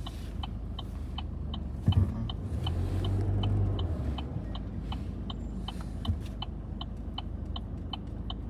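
Chevrolet's turn-signal flasher ticking evenly, about two and a half ticks a second, over the low rumble of the engine and tyres heard inside the cabin. A single thump comes about two seconds in.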